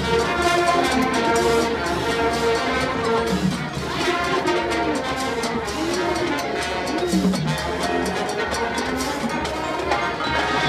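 Marching band playing: a brass section carrying held and moving notes over drumline and front-ensemble percussion strokes, with a few swooping pitch bends in the middle.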